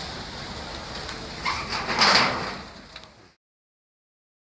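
Crackling of a fire burning wooden structures, with scattered sharp pops and a louder rushing surge about two seconds in. The sound then cuts off abruptly.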